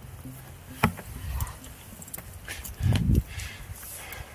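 A rock climber's hands and shoes on rock: a sharp click about a second in and a heavier thump with scuffing near three seconds.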